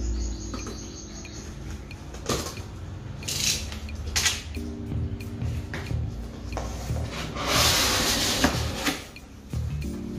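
A blade slitting the packing tape on a cardboard box with a few short scratchy strokes, then the cardboard flaps pulled open, with a longer loud scrape near the end. Background music plays underneath.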